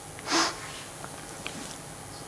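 A single short sniff near the start, a quick noisy intake of breath through the nose lasting about a third of a second.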